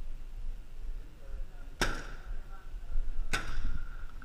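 Two paintball marker shots, about a second and a half apart, each a sharp pop with a short echoing tail.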